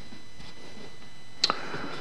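A single sharp click about one and a half seconds in, over a steady low hiss.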